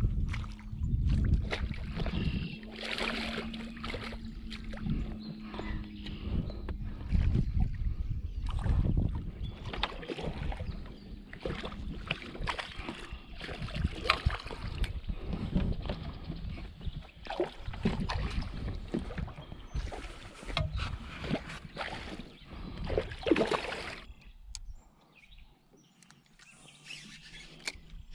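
Hooked smallmouth bass splashing and thrashing at the surface as it is played and reeled toward the boat, with irregular splashes, knocks and handling noises. A steady low hum runs through the first seven seconds or so, and things go quieter a few seconds before the end.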